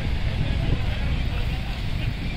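Wind buffeting a phone microphone in a loud, uneven low rumble, over a steady hiss of sea surf and faint voices of a crowded beach.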